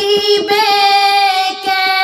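A high solo voice singing a naat, holding one long, steady note between the lines of the verse, with a slight turn in pitch about half a second in.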